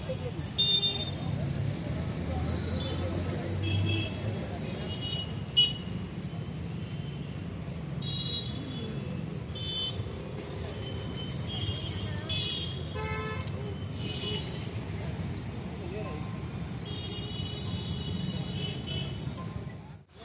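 Street traffic: a steady rumble of passing vehicles with frequent short horn toots, one or two longer horn blasts among them, the longest near the end.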